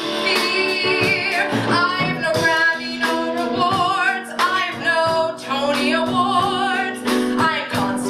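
A woman singing a musical-theatre song live into a microphone, with vibrato on her held notes, over an instrumental accompaniment.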